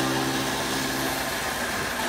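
Electric straw and grass chopper (chaff cutter, model 9ZT-0.4) running steadily on its 3 kW electric motor while straw is fed in and chopped. A steady hum over an even rushing noise; the hum's tones drop away about a second and a half in.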